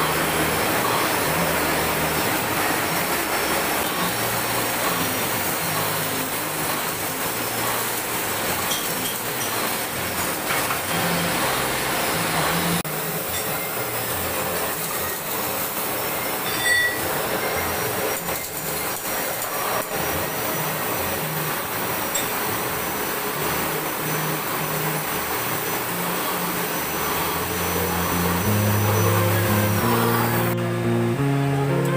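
Metal lathe running, turning a large metal bearing ring clamped in a four-jaw chuck while the cutting tool scrapes across the spinning metal. It is a steady machine noise, a little quieter in the highs from about thirteen seconds in.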